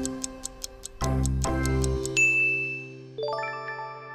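Quiz countdown sound effect: a fast clock ticking, about five ticks a second, over background music chords. The ticks stop and a bright ding comes a little after two seconds in, then a rising chime at about three seconds that rings out, marking that the time is up.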